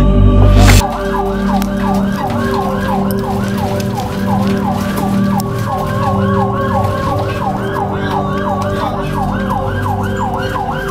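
Ambulance siren in a fast yelp, rising and falling about three to four times a second, heard from inside the ambulance over a steady low hum. It starts less than a second in, just as a loud low sound cuts off.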